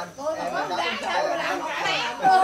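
Overlapping chatter of several people talking at once around a dinner table.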